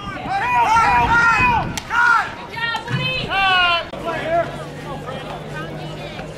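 Several players or spectators shouting and whooping in high, rising-and-falling voices for about four seconds, with one sharp click just before two seconds in. After that a steady low hum remains.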